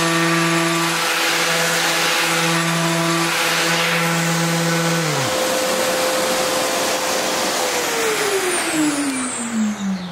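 Festool random-orbit sander running steadily against the hardwood edge of a cutting board, rounding it over, then switched off and stopping about five seconds in. A second machine's steady whine and hiss carries on a few seconds longer, then winds down falling in pitch near the end.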